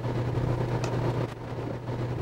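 Steady low drone of a patrol car's engine and tyres, heard from inside the cabin while driving.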